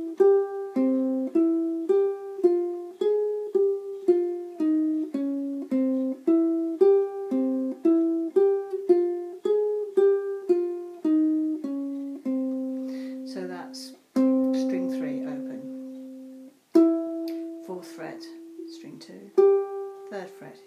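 Ukulele strung with a low G, picked one note at a time to play a flamenco-style melody. The notes come at about two a second, each ringing and fading. After about twelve seconds it slows into three longer held notes.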